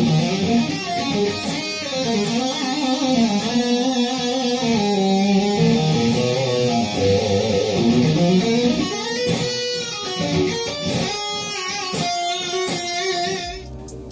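Electric guitar playing a single-note lead lick, with bent and wavering held notes and a run of quicker picked notes in the second half. Some notes are accented with raked pick attacks, the pick dragged through palm-muted lower strings on the way to the played string.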